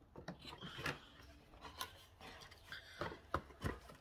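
Cardboard packaging being handled and opened: faint scraping and rubbing with a few soft taps.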